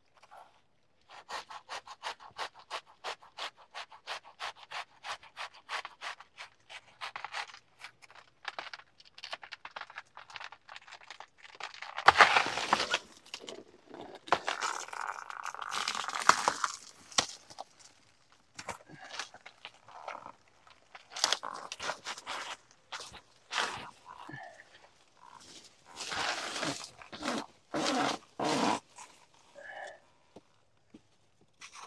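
Rapid, even sawing strokes, about four a second, cutting through a banana plant's stalk. About twelve seconds in, a loud rush of tearing and rustling banana leaves as the plant bends over and the bunch comes down, followed by scattered rustles and knocks.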